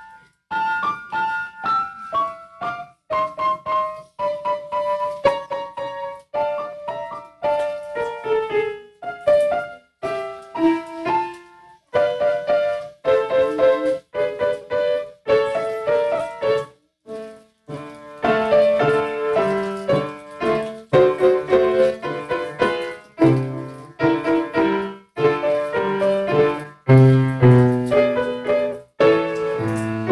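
Piano playing: a single-note melody at first, then from a little past halfway fuller chords with low bass notes, with a few brief pauses between phrases.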